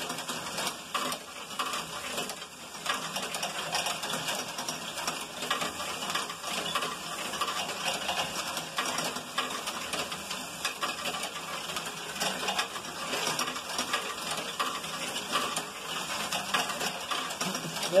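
A LEGO Technic great ball contraption loop running: motor-driven plastic gears, conveyor belts and stepper lifters clatter while plastic balls roll and knock through the modules, making a dense, continuous rattle of small clicks.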